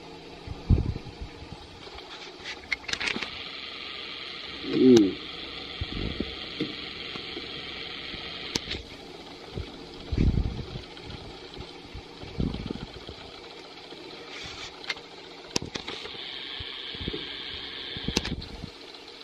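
Chicken pieces sizzling in a metal pot on the stove, a steady hiss, with a metal spoon stirring and scattered clinks and knocks of the spoon against the pot and bowl.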